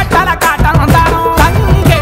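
Telugu Bathukamma festival song: a voice singing a melody over a steady drum beat.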